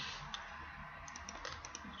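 Faint clicking of a computer keyboard being typed on, with a quick run of keystrokes in the second half.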